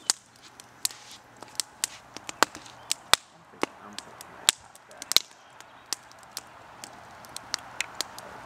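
Wood campfire crackling: irregular sharp pops and snaps, a few a second.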